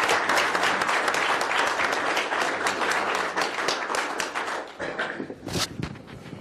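Applause from a roomful of people clapping. It is full at first, then thins out and dies away near the end, with a few last claps.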